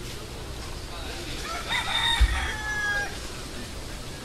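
Rooster crowing once, a call of about a second and a half that ends on a long held note, over outdoor street ambience. A brief low thump sounds midway through the crow.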